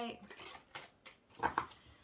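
Tarot cards being handled: a few soft taps and slides of the cards against the deck, the loudest about a second and a half in.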